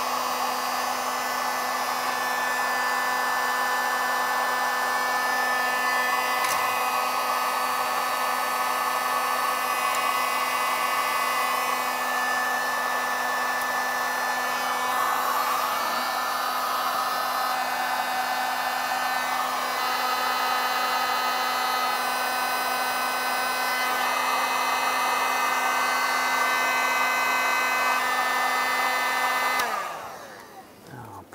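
Handheld electric heat gun running steadily, its fan blowing hot air over heat-shrink crimp connectors on wiring, with a steady motor hum under the rushing air. It is switched off at the very end.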